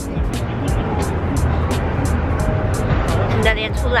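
City street noise with road traffic, under background music with a steady ticking beat; a voice speaks and laughs near the end.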